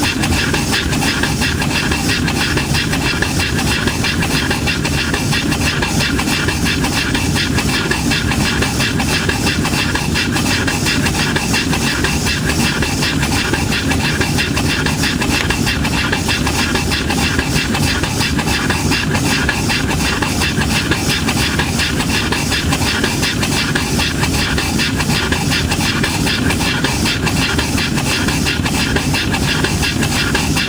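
Small steam engine running on steam from a homemade vertical boiler, with rapid, even exhaust beats over a steady hiss of steam. It is running down on the boiler's remaining steam, just before it stops.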